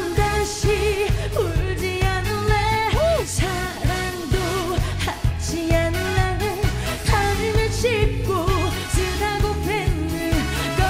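A woman singing a Korean trot song live over an instrumental accompaniment with a steady beat. Her held notes carry a wide vibrato.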